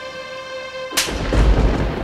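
A held music chord, then about a second in a sudden deep boom with a rumbling tail: a trailer-style impact hit sound effect.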